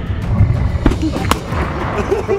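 Rifle shots: two sharp cracks about half a second apart near the middle, over background music.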